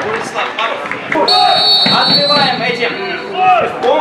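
Referee's whistle blown once, a long steady blast of about two seconds that fades out, signalling the kick-off, with voices around it.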